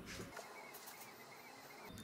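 Faint bird calls, a quick run of short chirps, over quiet outdoor background hiss.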